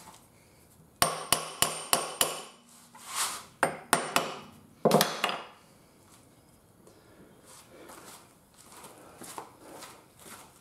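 A hammer tapping a metal part into an Ajax hydraulic floor jack as it is reassembled. A quick run of five sharp metal strikes comes about a second in, a few more follow, and the loudest, ringing blow lands about five seconds in.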